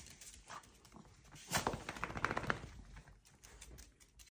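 Miniature dachshund's claws clicking on a tiled floor as it walks: a quick run of sharp clicks starting about a second and a half in and lasting about a second.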